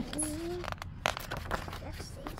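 A short rising laugh, then a picture book's paper page being turned, with a few quick rustles and clicks.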